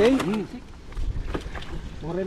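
Brief voice at the start, then light sloshing and splashing of shallow muddy water around people wading with a fishing net, with a low rumble of wind on the microphone and a few small knocks.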